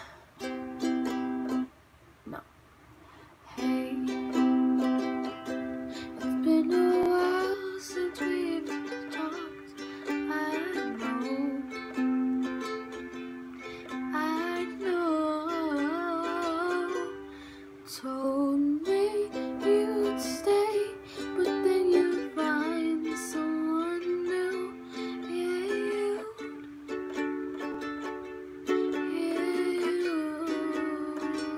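Ukulele strummed in simple chords with a girl's voice singing a melody over it. The strumming stops briefly about two seconds in, then runs on.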